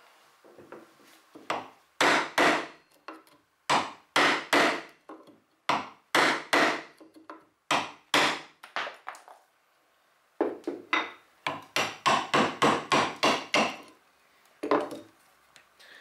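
Wood chisel chopping down into soft, punky wood at the end of a block, each cut a sharp crunch. The cuts come in pairs about every two seconds, then a quicker run of about four a second toward the end.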